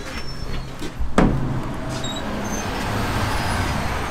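Road traffic passing on a city street, a vehicle going by close at hand, with one sharp knock about a second in as the door is pushed open.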